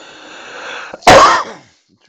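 A man sneezing once: a drawn-in breath that swells for about a second, then one loud, sharp burst.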